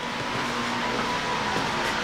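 Steady rushing noise with a faint hum, even in level and without any clicks or knocks.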